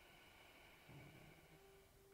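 Near silence: room tone, with a faint steady high-pitched hum that fades out near the end.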